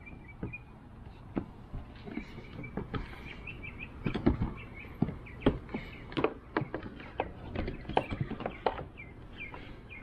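Scattered hard plastic knocks and clicks from a dry box's latch and lid and its cable being handled, loudest about halfway through. Small birds chirp in the background, most clearly in the first few seconds.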